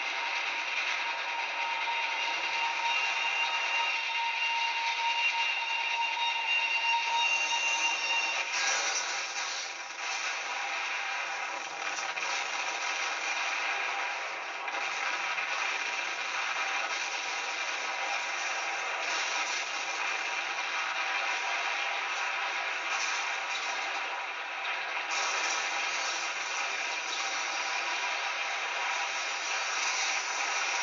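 Film sound effects of a steam locomotive clattering and rattling, then the crash and wreckage of a train, heard off a television with thin, narrow sound. A steady high tone sits over the first eight seconds or so.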